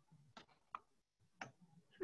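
Near silence with a few faint, short clicks, like a computer mouse or keys being worked.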